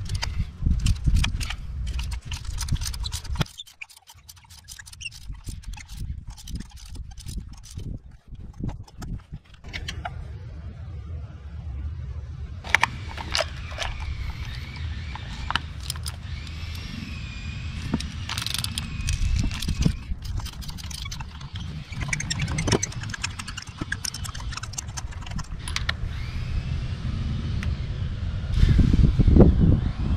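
Metal hand tools clicking and clinking as a ratchet and socket extensions unscrew a spark plug from a Chevy Cruze 1.4-litre turbo engine. The clicks come irregularly and are densest in the first ten seconds. A steady low rumble lies underneath from about ten seconds in, and a faint wavering tone sounds in the middle.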